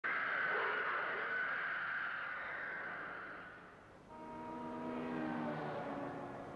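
Film soundtrack effects. A hissing, whistling wash fades away over about four seconds. Then a sustained tone of several pitches sounds together for under two seconds, sliding slightly before it stops.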